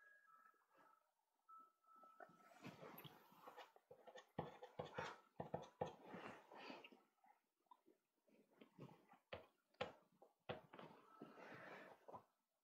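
Faint, irregular clicks and rustling from pastel sticks being handled and picked through, heard against near silence.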